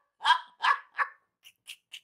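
A woman laughing hard: three short, loud bursts of laughter in the first second, then a few faint breathy gasps near the end.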